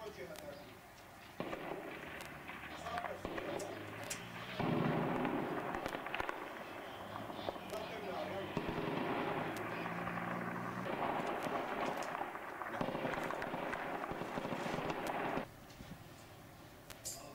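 Battlefield gunfire: many sharp cracks, irregular and several a second at times, over a dense background of noise and voices that cuts in and out abruptly.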